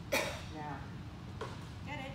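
A person's brief vocal sound, a short utterance or cough, about a tenth of a second in. A steady low hum runs underneath.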